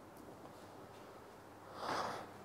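Near silence in a small room, then one short, breathy exhale or sniff from a person near the end.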